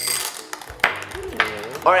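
Skittles candies tipped from a small glass bowl into a glass bowl of ice cream, with a brief glassy clink at the start and a sharp click a little under a second in, over background music.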